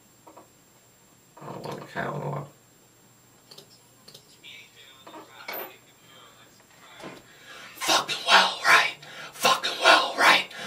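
A man's raspy, whispered vocal take into a studio microphone: one brief utterance about two seconds in, then a run of loud, rapid, rough syllables from about eight seconds in.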